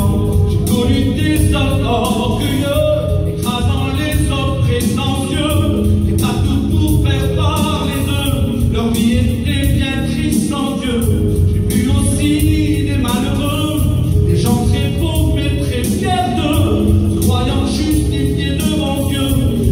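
A man's voice singing a French evangelical hymn through a microphone and loudspeakers, with music throughout and other voices joining in.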